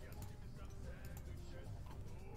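Faint online slot game audio: quiet background music tones with a few light ticks as winning symbols clear from the reels.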